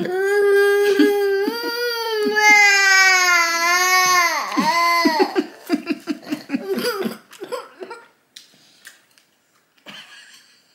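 A person crying: one long high wail that wavers up and down, breaking into short sobbing gasps about five seconds in and dying away by about eight seconds.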